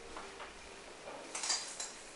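A large blanket rustling as it is swung around and wrapped over someone's shoulders: a few short, soft brushing sounds, the loudest about one and a half seconds in.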